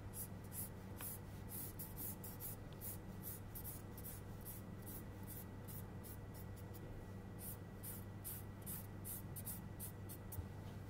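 A pen hatching on pattern paper: quick back-and-forth scratching strokes, about three a second, faint.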